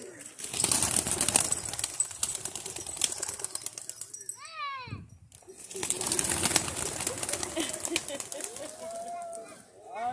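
A flock of released white doves taking off and flying, their wings clapping and flapping in two dense spells. A falling voice-like glide sounds between them, about four and a half seconds in, and voices come in near the end.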